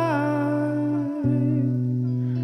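A man sings one long held note that dips slightly in pitch at the start and fades out about a second and a half in. Under it a PRS electric guitar rings a low note, picked again just after a second in.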